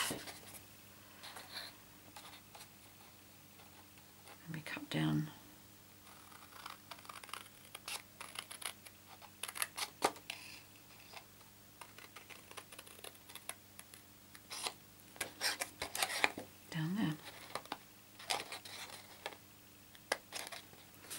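Small paper snips cutting cardstock: a string of short, sharp snips at uneven intervals, with the card rustling as it is handled. A brief murmur of voice comes twice, about five seconds in and near the end.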